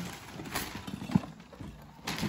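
Wrapping paper rustling and tearing off a boxed board game, with a few light knocks from handling the box.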